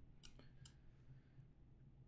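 Near silence with a few faint computer mouse clicks in the first second.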